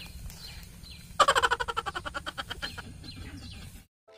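Birds chirping, and from about a second in a fast rattling series of sharp clicks, about ten a second, that starts loud and slowly fades. It cuts off suddenly just before the end.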